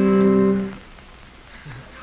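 A singer's held note over a strummed acoustic guitar chord, from a 1950s TV performance recording. The note cuts off just under a second in, leaving a short pause before the audience starts screaming right at the end.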